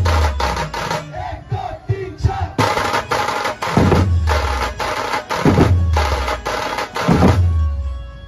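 Large stick-beaten dhol drums of a dhumal band played together in a loud rhythm, with deep booming strokes about every second and a half and quicker strokes between. The drumming cuts off near the end.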